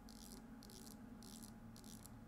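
Faint rattling clicks as the handheld radio's controls are worked to step its frequency up, in a few short spurts.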